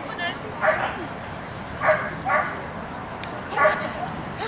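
A dog barking in short, sharp single barks, about four of them, at irregular gaps.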